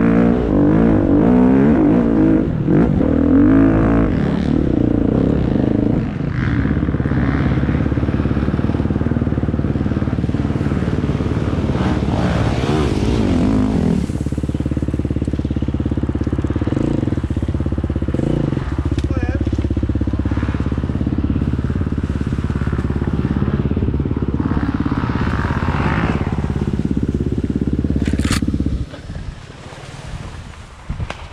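Enduro dirt bike engine revving hard and rising and falling for the first few seconds, then running at steadier throttle under load. The engine sound drops away suddenly about a second before the end.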